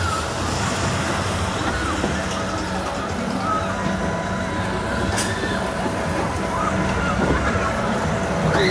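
Spider amusement ride's machinery running with a steady hum and held whining tones, with people's voices faint underneath and one brief click about five seconds in.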